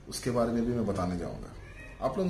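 A man's voice making a drawn-out vocal sound of about a second, pitch bending down, with no clear words, followed by a quieter stretch.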